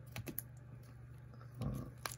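A few quick clicks of hard plastic card holders knocking together as a card in a magnetic holder is picked up off the table.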